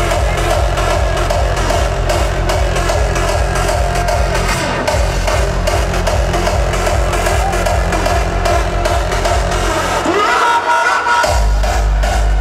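Hardstyle dance music played live over an arena sound system, a heavy kick drum and bass beating a steady rhythm. Near the end the kick drops out for about a second under a held synth tone, then comes back in harder.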